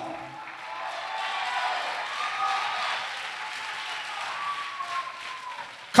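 A church congregation applauding, the clapping swelling and then slowly fading, with a faint voice or two calling out over it.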